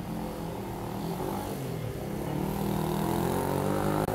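A motor vehicle's engine running, growing steadily louder as it comes closer, its pitch drifting slightly.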